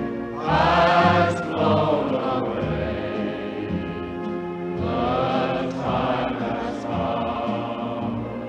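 Choral music: voices singing long held, wavering notes over an accompaniment, swelling louder about half a second in and again around the middle.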